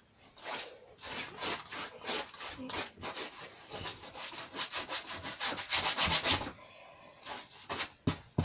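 Paintbrush scrubbing and dabbing paint onto a canvas in quick, irregular scratchy strokes, coming faster and louder in a flurry about five to six and a half seconds in, then a short pause before a few more strokes near the end.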